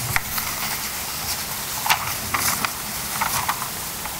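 Handling noise at a lectern microphone: a handful of scattered short clicks and rustles over a steady room hiss.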